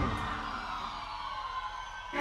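The last chord of a live band ringing out and fading after a final drum hit, cymbals and sustained tones dying away.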